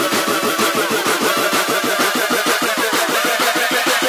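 Jungle terror electronic dance music: a buzzy, engine-like synth pulsing fast and evenly, with its pitch sliding down about two to three seconds in.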